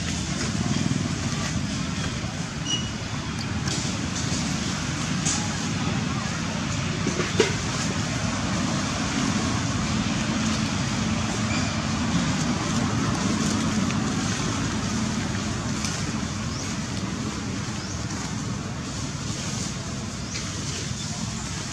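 Steady outdoor background noise with a low rumble, with scattered faint clicks and one sharp click about seven seconds in.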